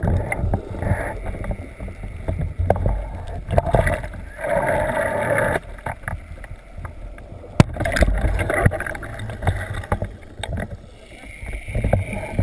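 Muffled underwater noise picked up by a camera in a waterproof housing: a low rumble of moving water with swells of hiss and scattered small knocks and clicks, and one sharp click about seven and a half seconds in.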